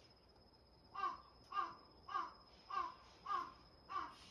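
A crow cawing six times in an even series, a little under two caws a second, starting about a second in.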